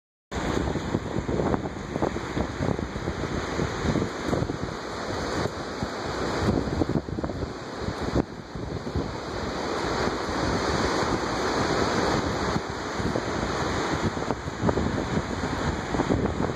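Steady rush of the Niagara River's whitewater rapids and whirlpool, with wind gusting on the microphone.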